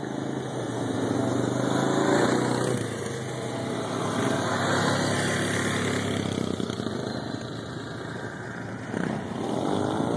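Dirt bike engine running as the bike comes down a slope toward the listener, its revs rising and falling several times and growing louder overall as it nears.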